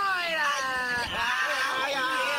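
Cartoon characters crying out in a scuffle: a long, high, whiny cry falling in pitch, then a second cry starting about a second in.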